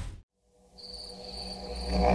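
The tail of loud music dies away, then after about half a second of silence a night chorus of crickets fades in. It is a thin, steady high trill over a low hum, growing louder toward the end.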